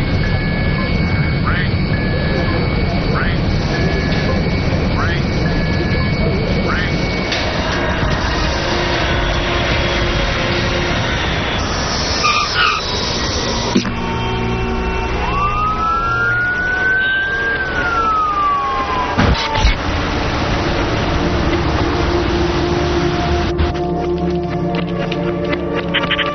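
Film soundtrack mix: a heavy low rumble with a repeating electronic beeping alarm over it for the first several seconds, then, past the middle, a single siren wail that rises and then falls, under dramatic music.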